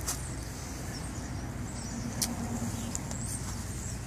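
A motor vehicle running: a steady low rumble with a faint engine tone in the middle, and a few light clicks.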